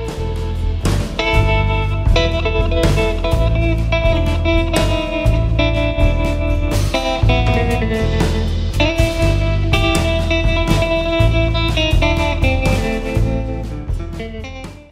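Electric guitar solo in a recorded instrumental rock band track, over bass and drums. The guitar plays tight, dissonant close-voiced notes, two neighbouring strings a half step apart, around one tonal centre.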